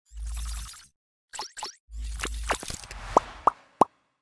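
Animated logo outro sound effects: a deep whooshing thud, two quick swishes, another whooshing thud, then three short rising pops near the end.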